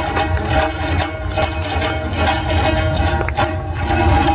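Two komuz, Kyrgyz three-stringed fretless lutes, played together in a fast, continuous strum over steady ringing notes.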